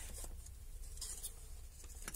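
Hands handling cables and small parts on a cluttered bench: a few short scratchy rustles and light clicks, the busiest about a second in, over a low steady hum.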